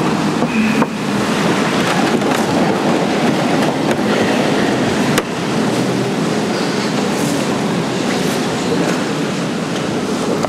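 A crowded congregation sitting down: a steady rustle and shuffle of many people and wooden benches, with two sharp knocks about one second and five seconds in.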